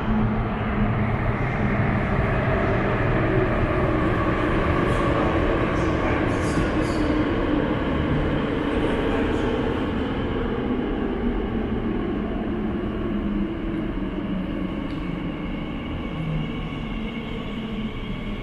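Elizabeth line Class 345 train running into the station behind platform screen doors. A steady rumble with a few short hisses partway through, easing gradually in the second half as the train slows.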